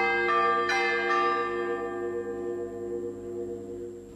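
Church bells struck twice, the second strike about two-thirds of a second after the first, their ringing slowly fading: a mourning toll.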